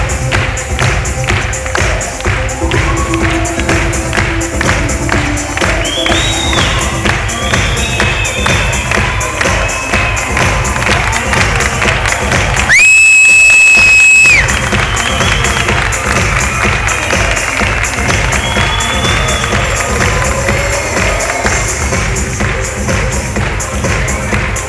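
Loud live stage-show music with a steady beat, heard from the audience with cheering and whoops over it. About halfway through, a piercing high whistle-like tone holds for about a second and a half, louder than everything else.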